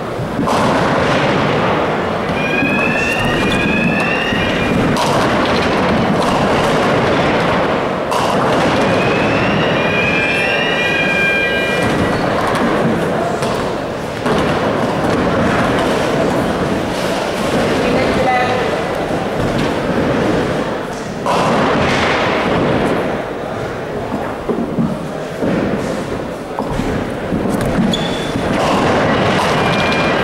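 Busy ninepin bowling hall during competition: continuous crowd chatter with the rumble and thuds of balls on the lanes and pins being knocked down. Two short sets of rising high squeaks stand out in the first half.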